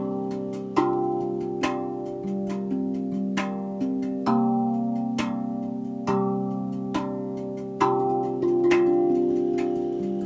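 Tuned steel hand drum played with the fingers: single notes struck slowly, about one a second, each ringing on and overlapping the next in a slow, soothing melody.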